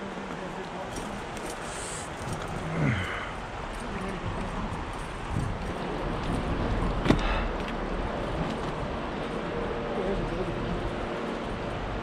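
Steady rush of a shallow stream's current, with a short voice sound about three seconds in and a single sharp click about seven seconds in.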